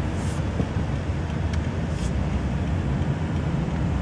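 Steady low road rumble inside the cabin of a moving Lexus sedan, with a few faint clicks.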